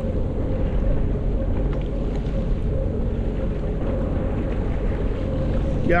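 Steady wind rumble on the microphone over open sea, with a steady low hum from the idling Sea-Doo Fish Pro jet ski.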